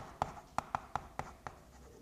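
Chalk writing on a chalkboard: a quick run of sharp taps and short scratches as characters are written, about seven or eight strokes, thinning out near the end.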